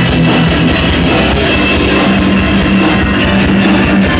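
Heavy metal band playing live and loud: distorted electric guitars, bass guitar and drum kit in a dense, continuous passage.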